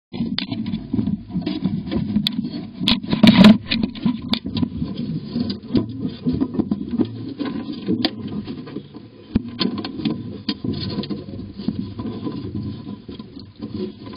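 A small furry mammal's claws and paws scratching, scraping and knocking against the wooden floor and walls inside a birdhouse, close to the microphone: an irregular run of clicks and rustles, loudest in a burst about three seconds in.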